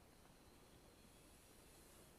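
Near silence: a faint, steady room tone with no distinct events.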